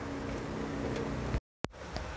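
Steady low background noise with a faint hum, broken by a moment of dead silence about one and a half seconds in where the recording is cut.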